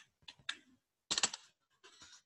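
Typing on a computer keyboard: a few separate keystrokes, then a quick run of several just past a second in.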